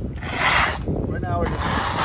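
Hand trowel scraping over a wet concrete overlay on a pool deck: two strokes, one about half a second in and a longer one starting near the end.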